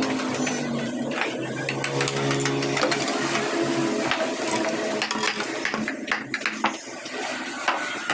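Woodcarving chisel working a wooden panel by hand: a run of sharp clicks and knocks as the blade cuts and pries out chips, over a low hum that fades out about halfway through.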